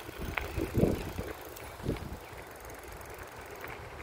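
Low outdoor rumble on a moving phone's microphone, with a few knocks about one and two seconds in.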